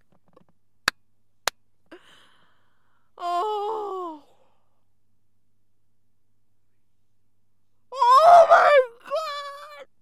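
A woman's wordless, overcome vocal sounds behind her hands: a short moan falling in pitch about three seconds in, then a louder wavering wail near the end and a shorter one after it. Two sharp clicks come in the first second and a half.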